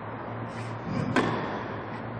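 One sharp knock about a second in, over a steady low hum.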